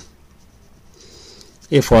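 Faint scratching of a pen writing on paper as a formula is written out, with a man's voice starting to speak near the end.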